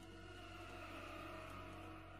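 Quiet background music of sustained, held tones with a soft airy wash over them.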